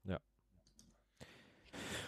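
Near silence in a pause between speakers, with one short click at the start and a faint breathy hiss near the end, just before talk resumes.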